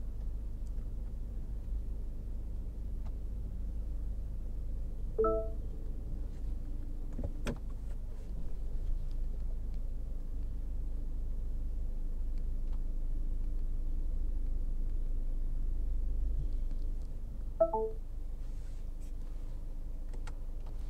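Cabin of a MINI Cooper S Countryman creeping along while its automatic parking assistant parallel parks it: a low, steady engine and road rumble. Two short electronic dashboard chimes sound about five seconds in and again near the end, with one sharp click in between.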